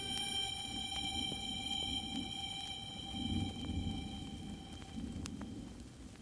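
Quiet background music of held, steady chord tones that fade out near the end, over a low rumble.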